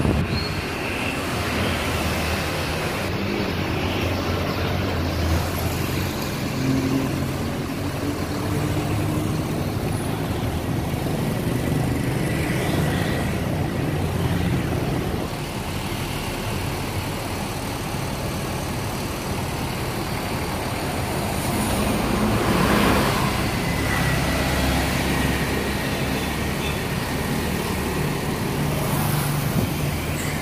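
Street traffic: the steady hum of idling tour-bus engines, with motorcycles and cars going by. One vehicle passes louder about two-thirds of the way through.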